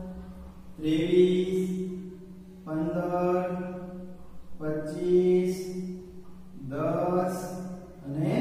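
A man's voice speaking in four drawn-out, sing-song phrases, each held on a nearly level pitch with short pauses between them, as in a teacher dictating figures aloud.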